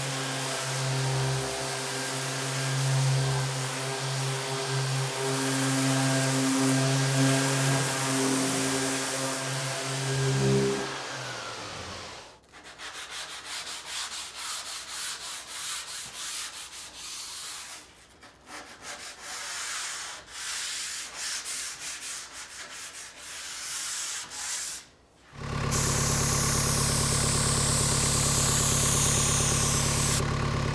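A random-orbit sander on a dust-extractor hose runs steadily against wood for about eleven seconds, then winds down. Irregular hand-sanding strokes on the bare wood follow. Near the end an HVLP paint sprayer's turbine starts a steady hum with a hiss.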